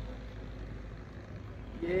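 Steady low rumble of outdoor background noise, with a man's voice starting near the end.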